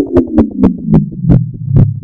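Slowed-down, pitch-shifted Pepsi logo animation sound effect: a pulsing electronic tone whose pitch falls steadily while the pulses slow down and spread apart.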